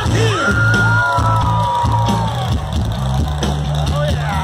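A live hard rock band, loud electric guitars, bass and drums, heard from the crowd, with a long held yell over the band starting just after the beginning and trailing off about halfway through.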